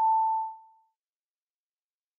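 A single steady electronic beep, one pure tone just under 1 kHz, lasting well under a second and fading away, as the closing sound of the end card.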